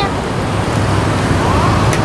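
Bánh xèo batter frying in hot oil in a wok: a steady sizzle, with a low hum underneath.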